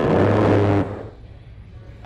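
Recording of an A-10's GAU-8 Avenger 30 mm rotary cannon firing: a loud, steady, low buzzing 'brrrt' burst that cuts off a little under a second in and fades away.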